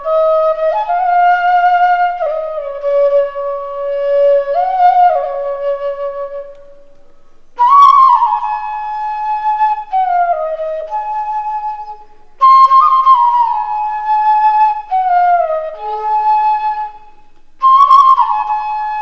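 A side-blown bamboo flute played solo: a slow melody in phrases a few seconds long, separated by short breath pauses. Some notes slide from one pitch to the next.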